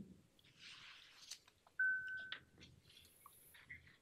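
Near-quiet room with faint taps and rustles, broken about two seconds in by one short, steady electronic beep lasting about half a second, followed by a click.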